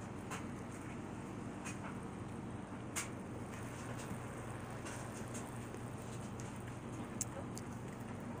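Ice being chewed in the mouth: a few soft, scattered crunching clicks over a steady low room hum.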